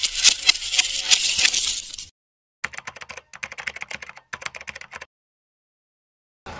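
Keyboard-typing sound effect: rapid clicking for about two seconds, then, after a short pause, three more bursts of quick typing clicks that stop about a second before the end.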